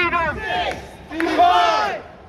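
A man shouting a slogan through a megaphone, loud and drawn out: one shout trails off just after the start and another comes about a second in, with crowd noise beneath.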